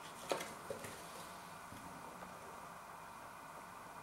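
Two light knocks from a cardboard food box being picked up and handled, in the first second, then quiet room tone.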